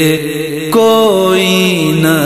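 Wordless vocal backing of a devotional kalaam: voices hum a steady drone with a slight waver, and about three-quarters of a second in a louder voice comes in on a high note and slides down in steps.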